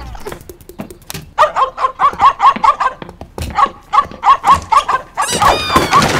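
Cartoon puppy yapping: two runs of short, quick, high yaps, about four or five a second, then a louder, noisier burst with falling tones near the end.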